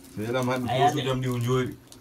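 A man's voice making one drawn-out, wordless vocal sound at a fairly level pitch for about a second and a half.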